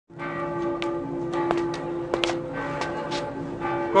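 Church bells ringing, several steady overlapping tones held throughout, with a few short sharp clicks over them.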